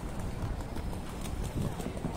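Footsteps clicking on stone paving in a quick run from about half a second in, over the steady low rumble of a busy street.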